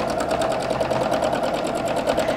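Home sewing machine running steadily at a fast, even stitch rate while free-motion quilting, stitching a stipple pattern through a small quilt.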